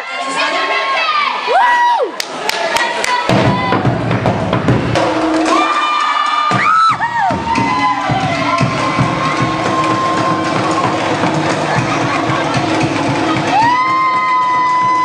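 A crowd cheering with long, high held shouts, joined about three seconds in by a Polynesian drum ensemble playing a fast, driving beat that carries on under the cheers.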